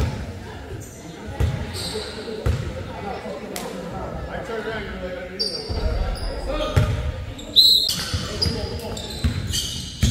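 Basketball bouncing on a hardwood gym floor, a couple of dribbles at the free-throw line in the first few seconds, then sneakers squeaking on the court after the shot, with people talking in the background of the echoing gym.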